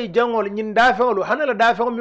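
A man speaking into a microphone.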